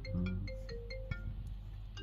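Faint electronic tune of short, pure notes that step up and down in pitch, several in quick succession during the first second or so, then dying away.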